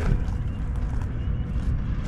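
Steady low outdoor rumble, even in level throughout.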